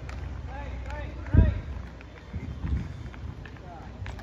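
Background voices of people talking and calling over a steady low rumble, with a loud, short low thump about a second and a half in and a weaker one a second later.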